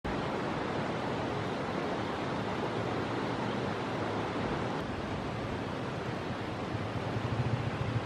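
Steady rushing outdoor background noise, with a low rumble rising toward the end.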